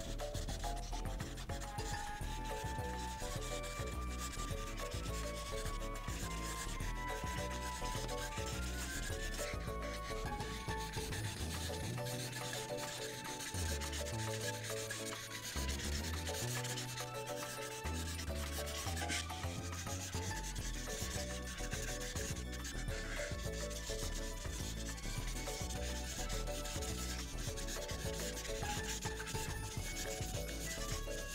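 A Prismacolor marker's nib scrubbing back and forth across paper on a clipboard, colouring in a large area in steady strokes. Light background music with a melody and a stepping bass line plays underneath.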